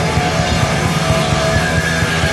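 Rock band playing live: distorted electric guitar holding long notes over a fast, even bass and drum pulse.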